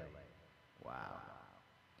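A man's voice heard through a delay effect: the tail of his words dies away in repeating echoes, then a short 'wow' about a second in, itself echoed.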